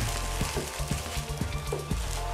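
Background music, with the crinkling and crackling of plastic bubble wrap handled around a box.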